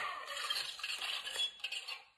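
Faint mechanical clicks and light rattling from a motorized Iron Man helmet as its faceplate closes, fading out near the end.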